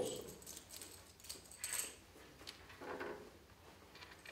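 Faint rustling and scraping of a green cloth draw bag being handled, with the numbered tokens shifting inside it.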